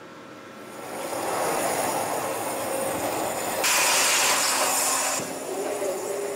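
Water jet cutting machine starting up on bronze: a hiss that swells over the first second or two and holds steady, then turns much louder and sharper for about a second and a half a little past the middle before dropping back.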